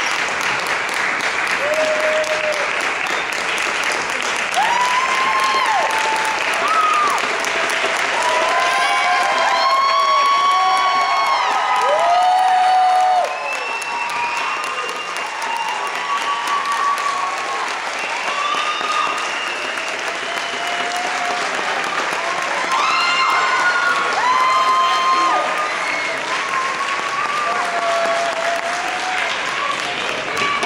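Audience applauding, with shouts and cheers rising and falling over the clapping. The applause eases a little about halfway through.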